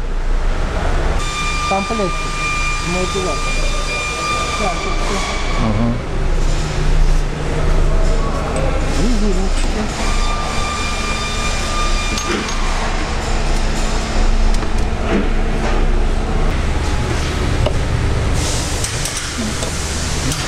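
Workshop background noise with low voices over a steady hum; a high-pitched machine whine runs for about five seconds from about a second in, and again for about two seconds around the middle.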